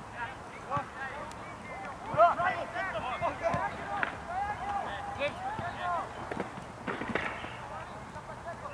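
Players shouting and calling out to each other during a soccer match, several voices overlapping across the field and loudest about two seconds in, with a few sharp knocks later on.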